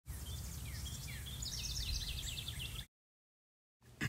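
Birdsong: a quick run of short, falling chirps, thickest in the middle, over a steady low rumble of outdoor background. It cuts off suddenly near three seconds in, leaving dead silence.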